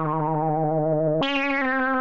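Korg Mono/Poly analog synthesizer playing a sustained, buzzy note, then a higher note about a second in that starts brighter and mellows as its upper overtones fade. The overtones waver slightly throughout.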